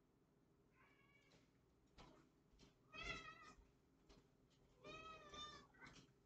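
A house cat meowing three times: a faint meow about a second in, then two louder meows about three and five seconds in.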